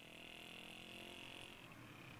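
Near silence: faint outdoor background with a faint, steady, high-pitched buzz that stops just before the end.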